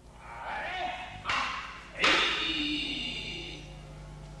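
Kiai shouts during a paired bokken exchange. There is a sharp sound about a second in, then a loud shout about two seconds in that trails off over the next second and a half in a reverberant hall.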